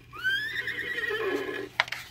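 Recorded horse whinny, the read-along record's page-turn signal: one long call that rises at the start and lasts about a second and a half. A short click follows near the end.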